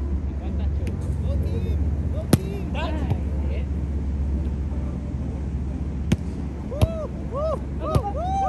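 A volleyball struck by players' hands and arms: four sharp slaps, one about two seconds in, two close together around six to seven seconds, and one at the very end. Underneath runs a steady low rumble, with players' short calls.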